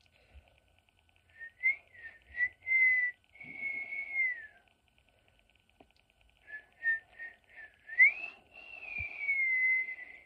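A person whistling a tune through pursed lips, in two phrases. Each phrase is a run of short notes ending in a long held note that slides down in pitch.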